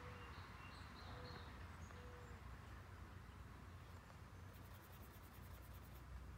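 Near silence: a low steady room hum, with faint scratching of a fine paintbrush on canvas as a quick run of light strokes near the end.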